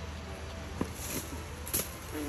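Leaves and branches of a grosella (Otaheite gooseberry) tree rustling as they are tugged down with a hooked pole. Two light knocks about a second apart come as fruit are shaken loose and drop.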